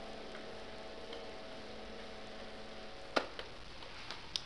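The faint tail of a recorded piano quartet: a low held string note dies away over about three seconds, then a single sharp click.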